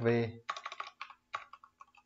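Typing on a computer keyboard: a quick, uneven run of keystrokes entering a username.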